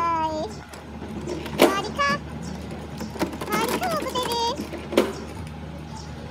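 Young children's voices calling out: one long held call at the start, then shorter calls a couple of seconds and about four seconds in. A few sharp clicks, the loudest about five seconds in, and a steady low hum lie underneath.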